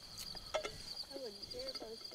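Crickets chirring in a steady, high, pulsing trill.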